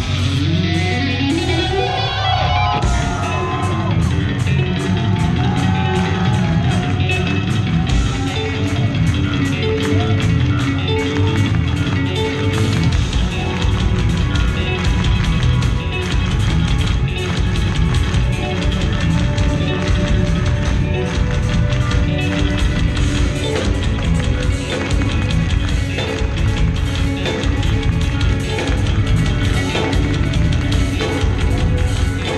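Live instrumental progressive metal, loud through the venue's PA: electric guitar lines with pitch bends, then from about three seconds in, drums and cymbals join in a fast, dense beat under the guitars and bass.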